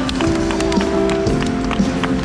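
Live band music over a concert sound system during an instrumental passage: held keyboard-like notes with drum hits about twice a second, recorded from the audience.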